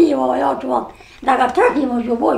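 An elderly woman speaking in two short, emphatic phrases, with a brief pause between them.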